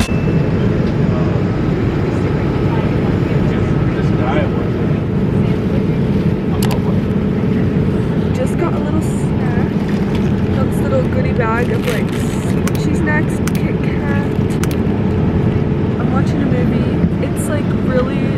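Steady roar of an airliner cabin in flight, the even rush of air and engines heard from a seat, with faint voices over it.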